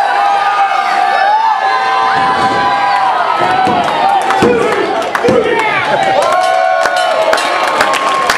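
Wrestling crowd shouting and cheering, many voices overlapping with long held yells, and sharp claps in the last two seconds or so.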